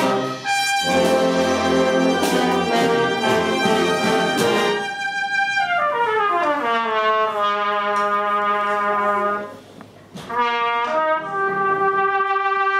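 Brass band playing a loud full-band passage, with percussion hits in the first few seconds. About five seconds in, a falling run of notes settles into a long held chord; the sound dips briefly just before ten seconds, and the band comes back in.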